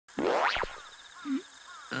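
A quick cartoon-style sound effect that glides steeply up in pitch over about half a second and cuts off sharply, followed by a few faint short chirps and a soft blip.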